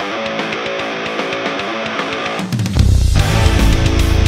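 Electric guitar played through an EVH 5150 III LBX valve amp, opening a metal song with a picked melodic line. About two and a half seconds in, the full heavy metal band comes in, much louder and heavier in the low end.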